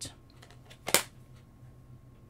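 Clear acrylic stamp blocks being handled on a craft desk: a light click at the start, then one much louder sharp plastic knock about a second in.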